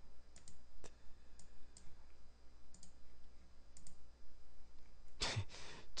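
Light clicks at a desk computer, scattered and some in quick pairs, as the presenter works the screen. Near the end a short, louder breathy burst, like an exhale.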